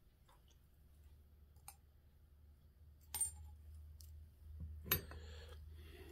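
Faint metallic clicks and clinks of small turbocharger parts being handled as the brass front journal bearing is taken out of the bearing housing. There are a few separate sharp clicks, the loudest about five seconds in.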